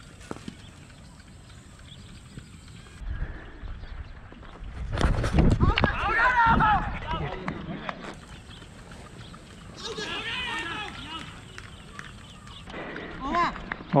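Men shouting and calling on an open cricket field, loudest in a burst about five to seven seconds in and again more weakly around ten seconds. A single sharp knock comes just after the start.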